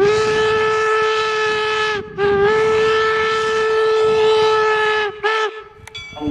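Steam whistle of the replica Central Pacific No. 119 locomotive blowing on one steady pitch: a long blast of about two seconds, a brief stutter, a second long blast, then a short toot near the end.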